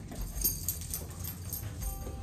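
Footsteps and a corgi's claws clicking on a hard floor as the two walk, a quick, irregular patter of small clicks.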